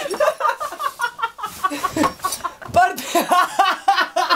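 Young people laughing hard, in short broken bursts with brief gaps between them.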